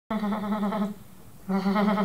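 Two wavering, goat-like bleats, each just under a second long, given as the happy cry of a stuffed toy llama.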